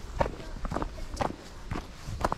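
Footsteps of hikers walking on a dry, leaf-littered dirt mountain trail with patches of old snow, about two steps a second.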